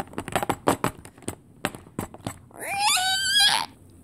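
A quick, irregular run of plastic clicks and knocks for about two seconds as the toys and game pieces are handled, then a drawn-out high vocal cry that rises in pitch and then holds for about a second near the end.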